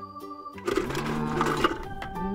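Plastic toy animal figures rattling against each other and the plastic tub as a hand digs through them, a dense rattle of about a second starting about half a second in. Steady background music plays underneath.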